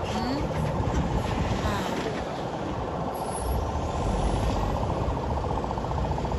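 Engines of a slow-moving convoy of SUVs running steadily, with indistinct voices in the background.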